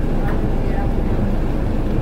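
Steady low drone of a motor yacht's twin diesel engines running underway at cruising speed, heard from the helm.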